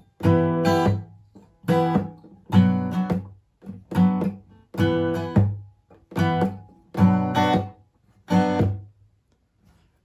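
Acoustic guitar with a capo strummed in a down-up-mute pattern: about seven short groups of chords in a row, each cut off abruptly by a palm mute and followed by a short rest, stopping about a second before the end.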